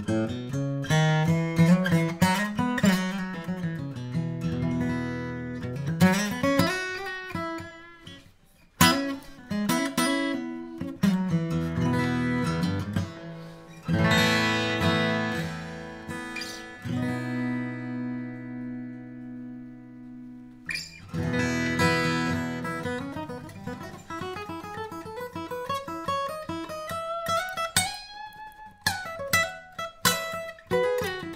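Maton SRS-60C cutaway dreadnought acoustic guitar, spruce top with Queensland maple back and sides, played solo: picked notes and strummed chords, with one chord left to ring out and fade for about four seconds past the middle before the playing starts up again.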